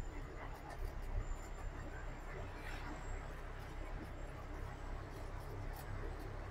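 Truck cab noise while driving: a steady low engine and road rumble, with small clicks and rattles scattered through it.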